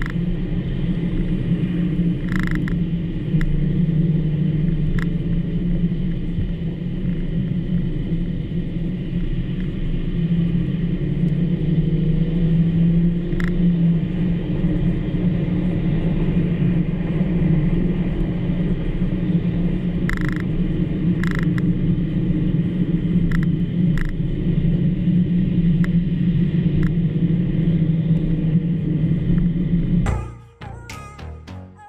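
Cabin noise in a SEAT Ibiza FR driving on a wet road: a steady engine drone and tyre rumble, with a few scattered short clicks.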